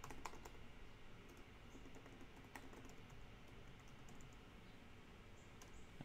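Faint typing on a computer keyboard: a few scattered key clicks, bunched near the start and sparser after.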